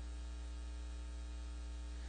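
Steady electrical mains hum with a faint buzz of many even overtones above it, unchanging throughout.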